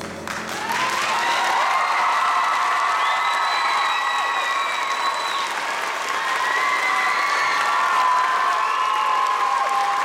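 A concert audience applauding and cheering as the song ends, rising to full strength about a second in. Shrill whoops and screams are held over the clapping.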